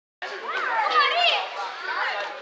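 Children's voices shouting and calling out, several high-pitched shouts overlapping, loudest about a second in.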